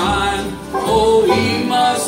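Acoustic bluegrass gospel band playing live: strummed acoustic guitars, mandolin and upright bass, with a steady, repeating bass line underneath.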